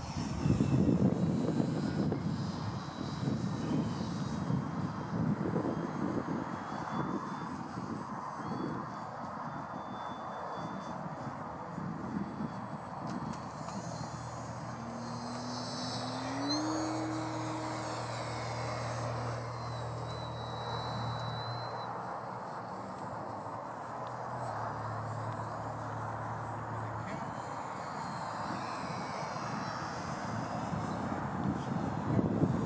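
A radio-controlled model airplane flying overhead, its motor a thin high whine that shifts in pitch as it turns and passes, over a steady rushing noise that is loudest in the first couple of seconds.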